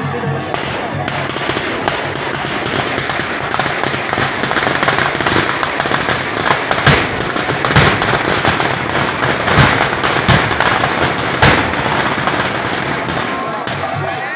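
A string of firecrackers going off in rapid crackling, with several louder bangs between about seven and twelve seconds in, over crowd noise.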